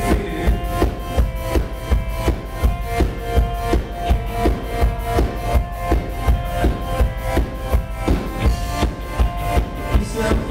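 Live rock band playing an instrumental passage: a drum kit keeps a steady beat of about two kick-drum hits a second under sustained electric guitar chords.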